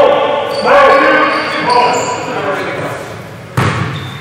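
Basketball bouncing on a gym floor, with one sharp bounce near the end that rings through the large hall.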